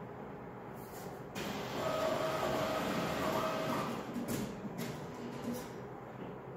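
ATM cash-deposit mechanism running as the deposited bills are carried into the safe: a motor whir that starts about a second in and lasts about three seconds, then a few clacks near the end.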